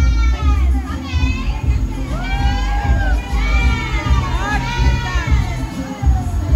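Party crowd cheering and shouting in high, drawn-out cries over loud music with a heavy bass beat.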